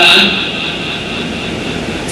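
A man's amplified voice finishes a word at the very start, then a steady whir of an electric wall fan and room noise fills the short pause.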